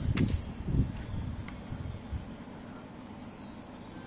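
A few soft knocks and light clicks in the first two seconds as a charger plug is pushed into the side port of a laptop, over a steady low background hum.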